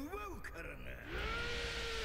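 Anime episode soundtrack playing quietly: a short voiced line at the start, then about a second in a tone that rises and holds steady over a faint hiss.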